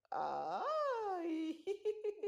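A toddler's long, high-pitched excited squeal of 'yay!', rising then falling in pitch, then breaking into a quick run of short giggles near the end.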